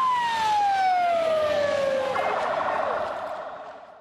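Ambulance siren: one long wail falling in pitch over about two seconds, then a fast warble that fades out near the end.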